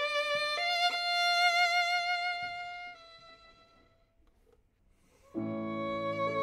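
A solo violin plays a slow phrase with wide vibrato, ending on a long held note that fades away about three seconds in. After a brief hush, the piano enters near the end with a sustained low chord under the violin.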